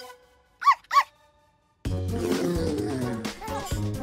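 A cartoon puppy yipping twice in quick succession, two short high yips about a third of a second apart. Background music comes in about two seconds in.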